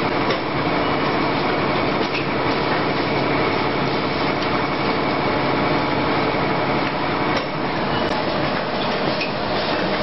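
Automatic blister packing machine running: a steady mechanical noise with a faint hum and a few light clicks, at about two, four and seven seconds in.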